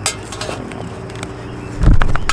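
Handling noise of camera gear: scattered light clicks and clinks, then a heavy low thump near the end as the camera is knocked or moved. A faint steady hum runs underneath.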